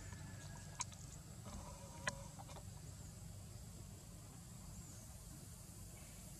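Faint outdoor ambience: a low steady rumble under a thin, steady high tone, broken by two sharp clicks about a second and two seconds in. A short animal call sounds around the second click.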